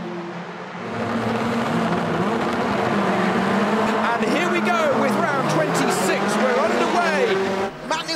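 A grid of touring-car engines revving together at a standing race start. Many engines rise and fall in pitch at once, becoming louder about a second in and cutting off just before the end.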